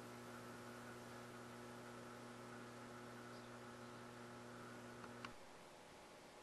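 Faint, steady electrical hum that cuts off abruptly with a brief click about five seconds in, leaving only faint hiss.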